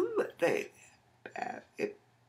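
A woman's voice making short wordless vocal sounds: four brief bursts, the first sliding up and then down in pitch.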